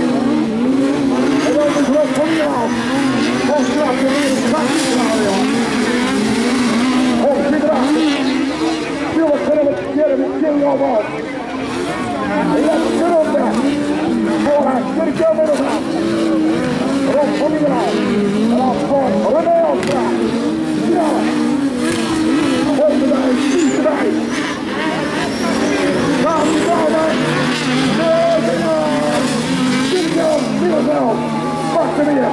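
Engines of several 1600cc sprint-class autocross cars racing on a dirt track, their pitch rising and falling continually as they rev up and back off.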